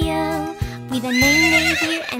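A horse whinny sound effect, high and quavering, rising about a second in over upbeat children's song backing music.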